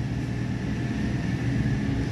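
Steady machinery drone of a chiller plant room, with large chillers and pumps running: a low hum with a faint steady high whine above it.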